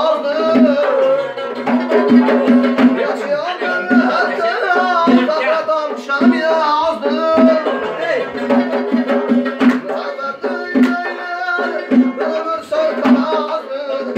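Live folk music: a long-necked lute strummed in a steady rhythm, with a hand-played frame drum (doira) beating regular strokes and a man's voice singing a wavering, ornamented melody.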